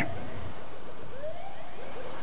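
Ambulance siren sounding faintly in quick, repeated rising-and-falling sweeps over a steady background of street noise.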